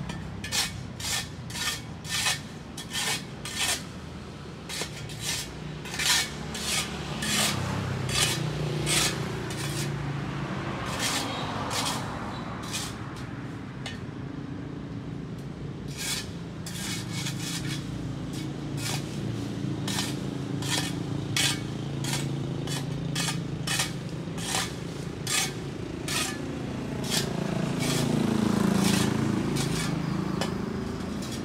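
Broom sweeping dry leaves and litter into a dustpan on bare dirt ground: short scratchy strokes, about two a second, with a few pauses. A vehicle passes on the road twice, swelling and fading, loudest near the end.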